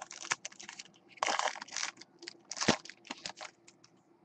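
A foil trading-card pack being torn open and its cards handled: a run of light clicks with two longer crinkling rustles, one about a second in and a shorter one near the three-quarter mark.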